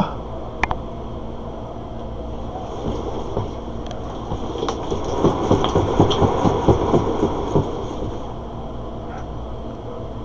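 One Fast Cat exercise wheel with a kitten on it: a run of soft, uneven thumps, about three or four a second, starts about five seconds in and lasts a couple of seconds, over a steady low hum.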